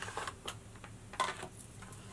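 A few short clicks and crinkles of clear plastic packaging on a makeup palette being handled, the loudest about a second in.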